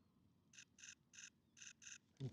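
Faint calls of a distant bird: five short notes in quick, uneven succession in the second half, over near silence.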